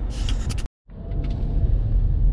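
Road and engine noise inside a moving car's cabin: a steady low rumble. Near the start there is a short hiss with a few clicks, which cuts off abruptly into a split second of silence before the rumble begins.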